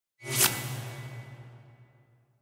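Whoosh sound effect for the title card, swelling suddenly to a peak about half a second in, then trailing off as a low hum that fades over about a second and a half.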